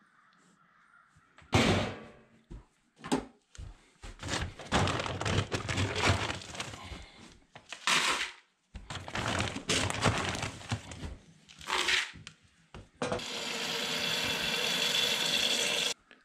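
Horse feed being scooped from galvanized metal bins and poured into plastic buckets, a run of rattles and knocks. For about the last three seconds a faucet runs water into a bucket to soak the feed.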